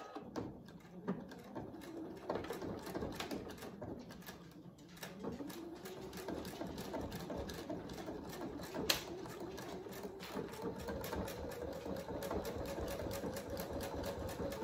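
Electric sewing machine stitching through the folded cotton fabric end of a dog collar, needle running in a fast, even rhythm. The motor's pitch rises as it speeds up about a third of the way in, then holds steady, with one sharp click about two-thirds through.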